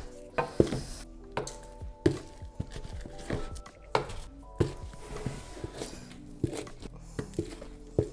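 Soft background music with held notes, over which a hand trowel scoops soil substrate out of a plastic bucket, giving short scrapes and knocks every second or two.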